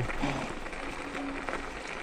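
Varla Eagle 1 electric scooter riding along a dirt trail: a steady wash of tyre and wind noise with a faint hum from the scooter that comes and goes. A man's short 'oh' right at the start.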